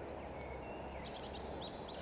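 Faint birdsong: a few thin, high whistled notes and short chirps over a steady low background hum of outdoor noise.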